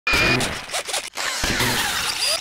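Electronic whooshing and swishing sound effects of an animated channel-logo intro. They start abruptly with a brief high tone, and the sound drops out suddenly about a second in.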